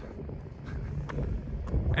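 Wind buffeting the microphone outdoors: an uneven low rumble with no other clear sound.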